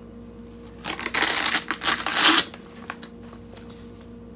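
Veto Pro Pac TP-XL nylon tool bag being handled as its cover flap is opened: a burst of fabric rustling and clicks lasting about a second and a half, starting about a second in.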